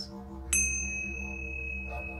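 Small embossed brass hand chime struck once about half a second in. It rings on with a single clear high tone, and a few higher overtones die away within the first second or so.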